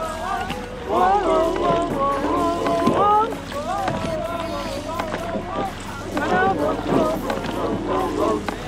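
People's voices over background music, in sections with short gaps, and wind on the microphone.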